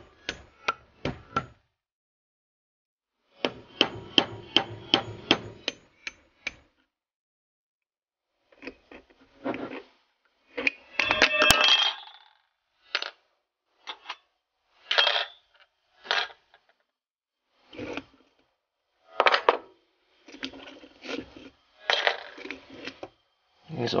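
Small hammer striking a metal Brembo brake caliper, in quick runs of sharp taps with pauses between, and a brief metallic ringing clatter about halfway through.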